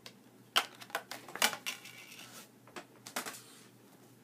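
Handling noise from Blu-ray cases and discs: a series of irregular sharp clicks and knocks, the strongest about half a second and one and a half seconds in, with a few more around three seconds.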